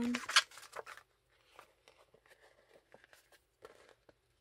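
Crinkly rustle of a thin plastic peel-off sticker sheet being picked up and flexed by hand, loudest in the first half second, followed by faint scattered handling noises.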